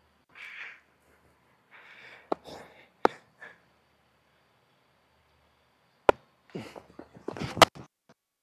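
Sharp cracks of a cricket bat and ball in net practice, four in all, the first two close together and the last two near the end, with the batter's breathing close on his body mic between them.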